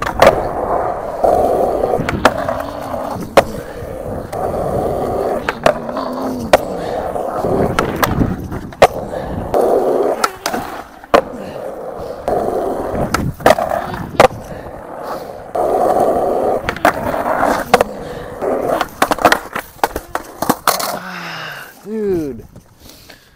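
Skateboard wheels rolling on concrete in repeated runs, picked up close by a wireless mic worn by the skater. The rolling is broken by many sharp clacks of the tail popping, the board landing and hitting a concrete ledge during grind and slide attempts. A burst of clattering impacts near the end is a fall, with the board knocked away.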